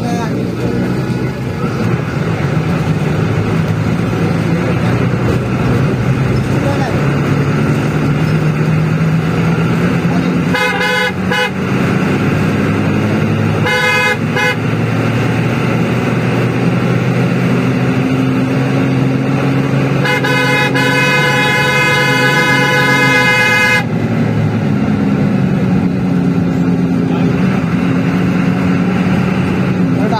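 Bus engine running at highway speed with road noise, heard from a moving bus at night. A loud single-pitched bus horn sounds in short blasts about ten and fourteen seconds in, then one long blast of about four seconds just past the middle.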